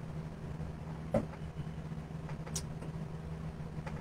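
A steady low hum runs underneath, with a few faint clicks. A short spoken "yeah" comes about a second in.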